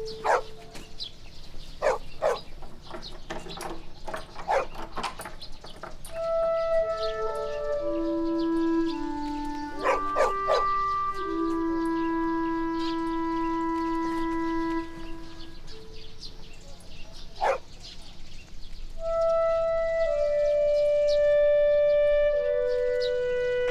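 Background score: a slow melody on a solo wind instrument, played as long held notes. A few sharp clicks and knocks fall in the first few seconds and once more later.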